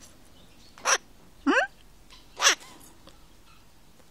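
Pet parrot giving short, high-pitched chirps, once about a second in and again near the middle, with a brief questioning 'mm?' in between.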